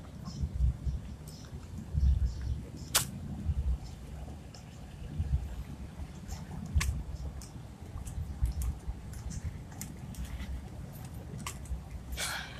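Uneven low rumbling on the microphone of a handheld camera being carried along a sidewalk, with a few sharp clicks spread through.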